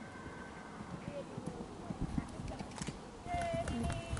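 Horse cantering on grass, its hoofbeats dull thuds that grow stronger in the second half as it comes closer.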